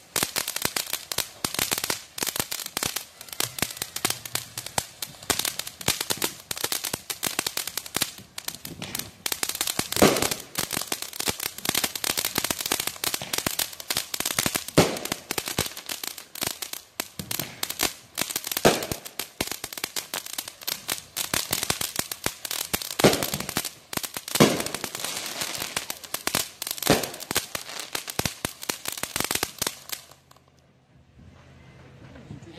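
Fireworks crackling in a dense, continuous stream of rapid pops, with louder single bangs breaking through every few seconds.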